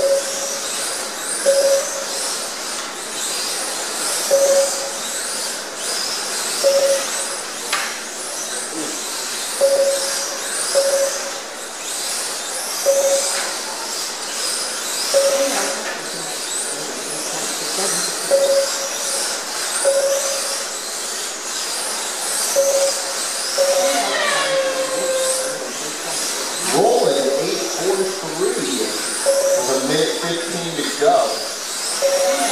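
Short beeps at one pitch from the lap-timing system, one each time a car crosses the line, irregularly every second or two. Under them runs the high whine of Kyosho Mini-Z electric RC cars' motors, rising and falling as the cars accelerate and brake through the corners. Near the end, pitched sounds slide up and down over the beeps.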